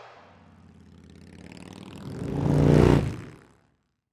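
A motorcycle engine swells up to loud about three seconds in, then fades away quickly to silence.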